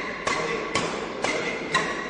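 Badminton rackets striking a shuttlecock in a fast flat drive exchange, a sharp hit about every half second, four in all, each followed by a brief ring in the hall.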